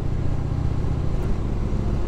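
Harley-Davidson Heritage Softail V-twin engine running steadily at cruising speed, a low rumble under a constant rush of wind and road noise.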